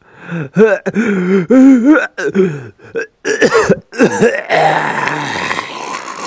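A man's voice groaning and gasping in short, strained pieces, breaking into a cough near the end: the dying sounds of a badly injured man.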